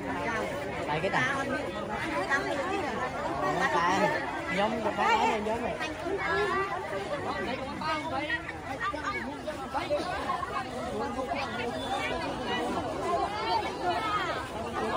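Speech only: several people talking over one another, a crowd's chatter.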